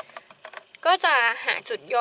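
A few light clicks of a pen being handled on a desk during the first second, then a woman speaking.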